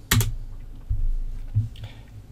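A single sharp computer keyboard click just after the start, followed by a few soft low thumps.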